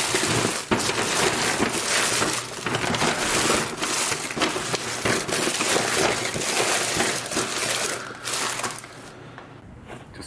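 Crinkling and rustling of a brown paper bag and wrapped candy as the candy is dumped and jostled into the bag, a dense crackle of many small clicks that dies down about nine seconds in.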